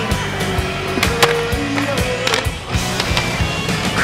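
Skateboard on concrete: wheels rolling and a few sharp clacks of the board popping and landing, the loudest about a second in, over backing music with a steady bass line.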